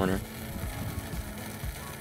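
Wind rumbling and buffeting on the microphone in uneven low gusts, after a brief spoken word at the very start.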